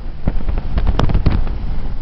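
Wind and road noise buffeting the microphone at the window of a moving car, with a run of sharp crackling pops, the sharpest about a second in.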